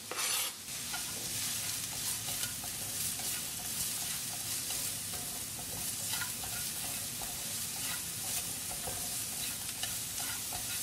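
Chopped onion sizzling in hot oil in a non-stick frying pan, with a steady hiss, while being stirred with wooden chopsticks that give light scattered taps and scrapes against the pan. There is a louder burst of sizzle and scraping right at the start.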